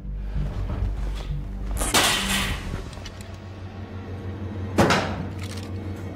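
Film score with a steady low drone, broken by two sharp impacts about three seconds apart, the first ringing out briefly.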